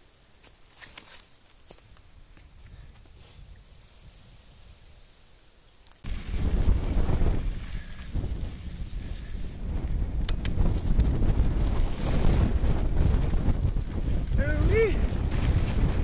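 Wind blasting the microphone of a helmet-mounted action camera on a mountain bike in a storm: loud, low, rumbling buffeting that starts suddenly about six seconds in. Before that there is only faint rolling noise with a few light clicks, and near the end a brief pitched sound rises and falls.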